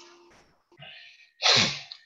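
A person sneezing once close to the microphone: a short intake of breath, then a loud sneeze about a second and a half in.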